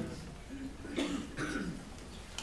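A person coughs about a second in, a short sudden sound with a second brief cough or throat sound just after it, against faint room voices.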